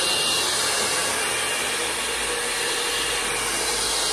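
Handheld hair dryer running steadily on hair: an even rush of blown air over a faint motor hum.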